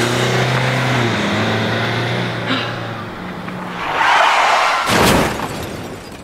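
Car engine running steadily as the car pulls away. About four seconds in comes a brief high squeal, then a short loud rush of noise.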